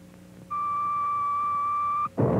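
Steady radio tone signal from a bomber on a simulated bomb run, one unchanging pitch with a faint overtone, starting about half a second in. The tone marks the run in progress; its stopping indicates bomb release.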